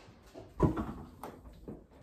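A refrigerator door being opened, with a sudden thump about half a second in, then handling clatter and a sharp click.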